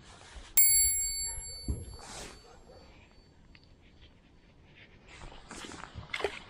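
A single bright metallic ding, like a bell, rings out about half a second in and fades over about two seconds. A short rustle follows.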